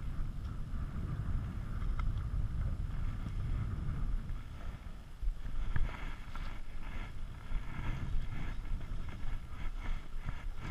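Steady low rumble of wind buffeting the microphone over choppy water, with a few faint clicks and one sharper knock a little after the middle.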